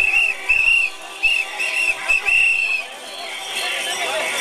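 A handheld whistle blown in a quick run of short blasts, about seven of them. The last blast is longer and stops a little before three seconds in, leaving crowd noise.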